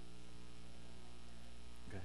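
Steady electrical mains hum with many overtones. A short throat sound, such as a cough or throat-clear, comes near the end.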